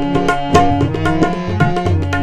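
Instrumental Baul folk music: a tabla-like hand drum playing a fast rhythm with deep bass-drum swells, under a held melodic line.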